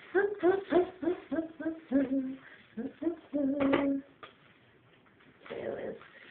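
A woman humming a short wordless tune in quick, bouncing notes, with a couple of longer held notes. Near the end comes a brief rustle as a plastic package is handled.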